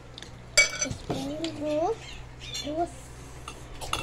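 Metal spoons clinking and scraping on ceramic plates as small children eat, with one sharp ringing clink about half a second in and lighter clicks later. A small child's brief voiced sounds come in between.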